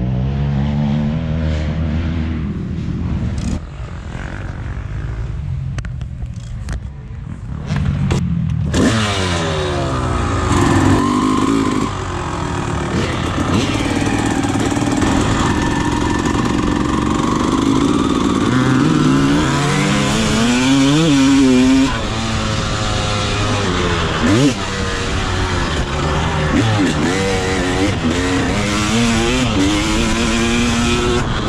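1999 Honda CR250R's 250 cc single-cylinder two-stroke engine running. From about nine seconds in it revs up and down again and again as the bike is ridden, with wind rushing over the microphone.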